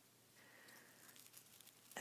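Near silence, with faint rustling and creasing of a folded paper model being worked by hand.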